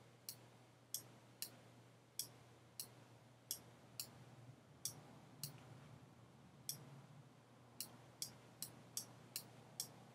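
Sharp, short clicks of a computer mouse, about sixteen at uneven intervals and coming faster near the end, over a faint low steady hum.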